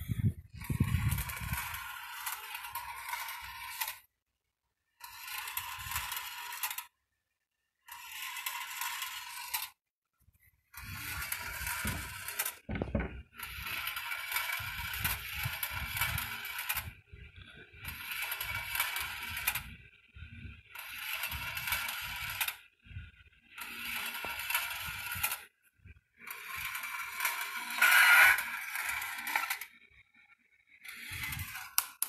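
Small battery-driven motor turning the copper-wire spiral lift of a homemade marble run, with marbles clicking and rattling as they are lifted and roll along the wire tracks. The sound runs in stretches of a few seconds, cut by several short complete silences.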